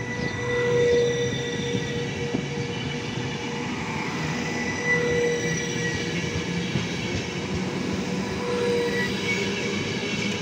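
Trenitalia Intercity coaches rolling slowly along the platform: a steady rumble of wheels on the rails, with a metallic squeal held on two pitches that swells and fades every few seconds.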